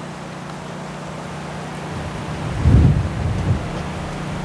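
Wind buffeting the microphone: a steady low rush that swells in a stronger gust about two and a half seconds in.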